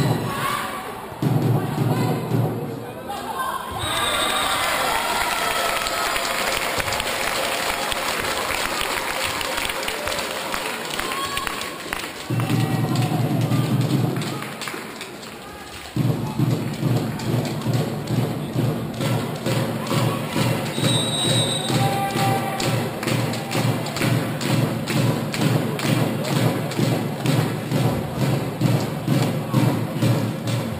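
Crowd of spectators in a sports hall cheering and shouting. From about halfway through there is loud rhythmic thumping at about two beats a second.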